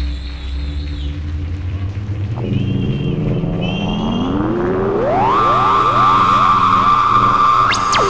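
Electronic synthesizer music: a low drone gives way to slow rising pitch glides that settle into a held high tone, with a fast sweep up and back down near the end.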